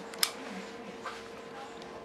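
A single sharp metallic click from a Taurus PT-908 9 mm pistol's action being worked by hand, about a quarter second in.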